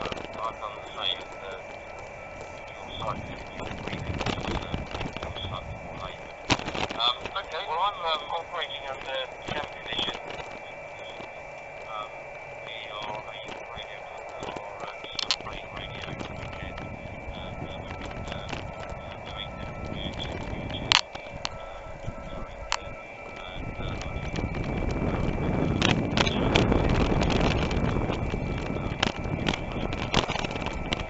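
An amateur radio transceiver's speaker receiving on HF, with garbled sideband voices and keyed Morse code tones, heard over the bicycle's riding noise. Broadband wind and road rush grows louder for the last several seconds.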